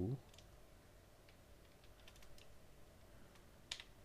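Faint computer keyboard keystrokes, a few scattered key presses with a sharper click near the end.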